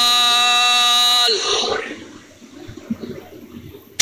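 A military commander's drawn-out drill command, one long vowel held on a steady pitch, breaking off with a drop in pitch just over a second in. After it comes faint open-air hiss with a few small clicks.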